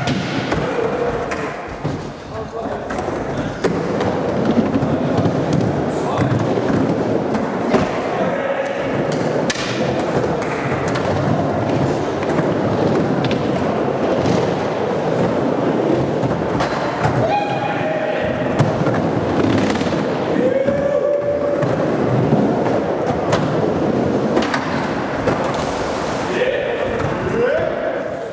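Skateboards rolling and clattering in a skate bowl, with repeated sharp thuds of boards and landings, over a steady hubbub of voices.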